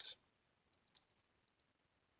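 Near silence, with a short sharp click right at the start and a few faint computer mouse clicks about a second in.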